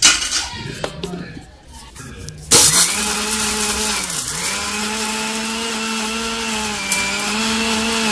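A few knocks as the stainless steel jar is set on an Indian mixer grinder. About two and a half seconds in the motor starts abruptly and runs at a steady whine, grinding tomatoes and masala into a paste. Its pitch sags briefly about four seconds in and then holds.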